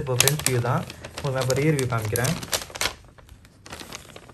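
A man talking while clear plastic banknote sleeves crackle and click sharply as they are handled and flipped, densest in the first two and a half seconds, with a few more clicks near the end.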